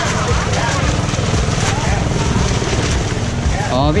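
Several people talking in the background over a steady low rumble and noise. A man's voice comes in clearly near the end.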